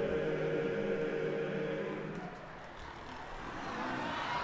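Men's a cappella barbershop chorus holding one steady chord that fades out about halfway through. Near the end, audience noise begins to rise.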